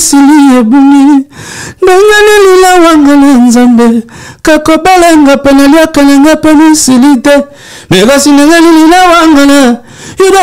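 A man singing unaccompanied into a close microphone: four phrases of long held, wavering notes, with short breaks about a second in, about four seconds in and about seven and a half seconds in.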